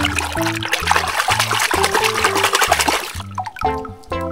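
A hand splashing and sloshing through soapy water in a plastic tub, stopping about three seconds in, over background music with a steady stepping bass line.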